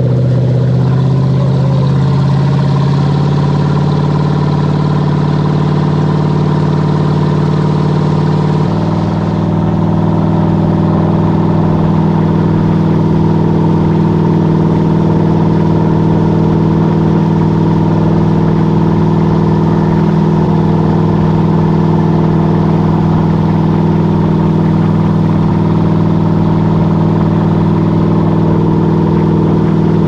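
Tow boat's engine running steadily at speed, its pitch climbing over the first couple of seconds, then stepping abruptly to a new tone about nine seconds in. The rush of the churning wake runs under it.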